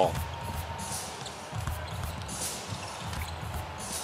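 A basketball dribbled on a hardwood court, a few irregular thuds, with brief sneaker squeaks during live play.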